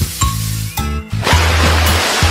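Children's song backing music with a steady bass line. A little past halfway, a rush of water poured from a small plastic bucket splashes onto a plastic ride-on toy car.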